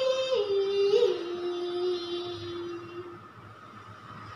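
A girl's solo singing voice holding a long note at the end of a sung line. The note steps down in pitch twice and fades out about three seconds in.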